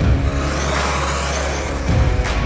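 Motorcycle engine passing by. It comes in suddenly, swells towards the middle and eases off, over a steady low rumble.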